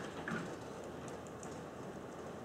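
Quiet room tone with a few faint light clicks and handling noise from hands at a lectern.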